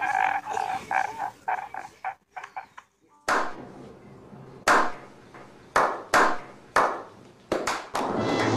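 A man's sobbing wails taper off over the first two or three seconds. Then a slow clap follows: about eight single, echoing hand claps, roughly a second apart at first and quickening near the end.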